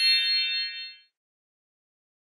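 A bright electronic chime at the end of a recorded course-book exercise, ringing out and fading away about a second in.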